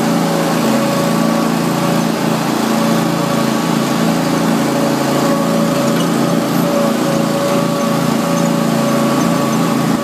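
Zero-turn riding mower engine running steadily while the mower drives along pavement, a constant drone that holds the same pitch throughout.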